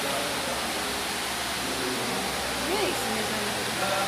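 Electric pedestal fan running, a loud steady rush of air noise.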